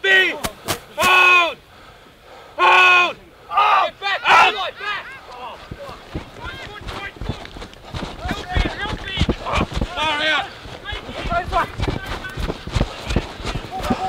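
Rugby players shouting on the field: three loud, drawn-out calls in the first few seconds, then many overlapping voices calling out as play moves on, mixed with sharp knocks.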